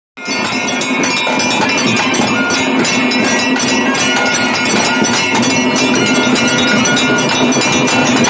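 Loud ritual music with rapid, continuous metallic bell ringing over steady held tones, starting abruptly just after the start.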